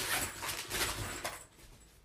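Plastic snack bag crinkling and rustling as it is shoved out of sight, stopping about a second and a half in.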